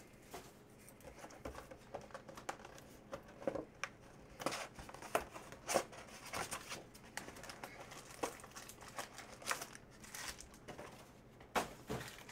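Plastic shrink-wrap crinkling and tearing as a hobby box of trading cards is unwrapped, with the cardboard box opened and its foil packs handled. It comes as a string of irregular crackles and rustles.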